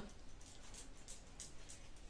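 Faint snips of scissors cutting the ends of a clip-in hair extension, a few short cuts.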